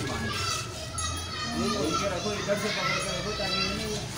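Several people talking and calling at once, indistinct overlapping voices with no clear words.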